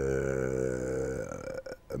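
A man's voice holding one long, low drawn-out vowel for over a second before trailing off: a hesitation sound between phrases of speech.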